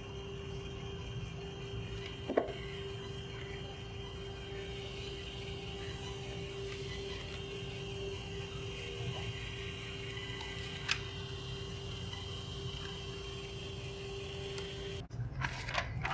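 A ZEGEN electrocardiograph's built-in paper printer runs with a steady hum while it feeds out the printed 12-lead ECG tracing. The hum stops abruptly about a second before the end, and there are a couple of brief clicks along the way.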